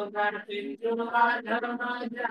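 A single voice chanting a verse in a steady, sing-song recitation, held on a fairly even pitch and broken into syllables by short pauses.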